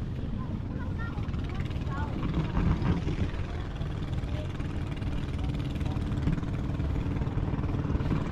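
Steady low rumble of wind on the microphone, with faint voices in the background.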